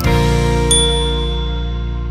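A single bright ding, the notification-bell chime of a subscribe animation, about a second in, ringing out over a long-held final chord of background music that slowly fades.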